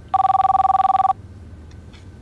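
Corded landline telephone ringing once: a fluttering electronic two-tone ring lasting about a second.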